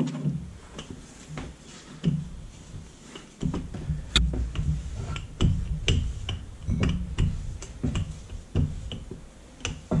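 Wooden rolling pin rolled back and forth over yeast dough on a wooden board: a low rumble with repeated knocks and clicks, roughly one or two a second, getting busier after the first few seconds.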